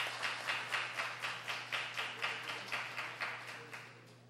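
A crowd clapping in unison, about four claps a second, the rhythm gradually fading and dying out near the end.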